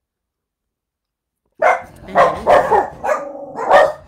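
A dog barking in a quick series of about five loud barks, starting suddenly about a second and a half in.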